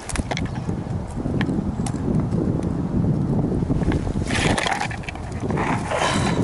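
Footsteps and the rustle of clothing and twigs as someone pushes through dry undergrowth, over a steady low rumble of wind and handling on a body-worn camera microphone. A louder brushing rustle comes about four seconds in.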